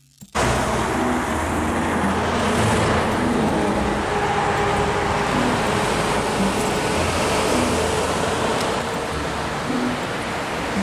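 Road traffic heard as a steady, loud rush of noise, with a faint engine hum coming and going.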